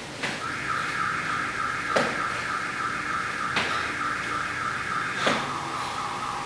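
Sneakered feet thudding on a tile floor in a steady rhythm, four times, about every second and three-quarters. Under them runs a steady high-pitched tone that begins just after the first thud and drops lower near the end.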